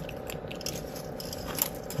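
Wire ends being twisted together by hand to tighten them, with a few faint scattered clicks and scratches.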